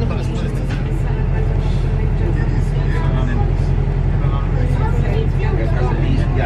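Bus engine running with a steady low hum, heard from inside the bus, with voices over it.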